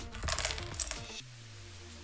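Small black puzzle pieces being stirred by hand on a tabletop, clicking and clattering against each other and the table for about a second before the mixing stops.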